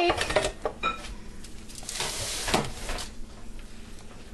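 Light kitchen handling noises: a few soft knocks and a stretch of rustling about halfway through.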